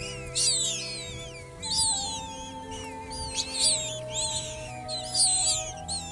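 Eurasian magpie nestlings giving short, high, squeaky begging calls, about one a second, as a parent feeds them at the nest. Background music of slow held notes runs underneath.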